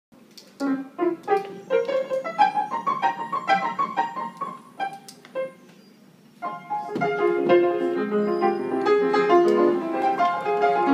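Piano played by hand: separate notes and short phrases for the first five seconds or so, a brief pause, then fuller, busier playing with chords from about six and a half seconds in.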